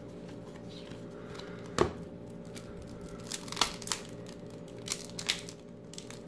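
Wax-paper wrapper of a trading-card pack being torn and crinkled open by hand: one sharp snap about two seconds in, then a run of short crackles and tears in the second half.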